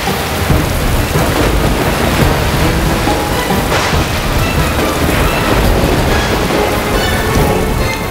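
Heavy rain pouring steadily, with deep thunder underneath.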